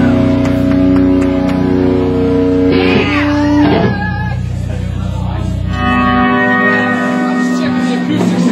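Live rock band's electric guitars and bass holding sustained, ringing chords, with shouted voices about three seconds in; the low bass end drops away about six seconds in while the guitar notes keep ringing.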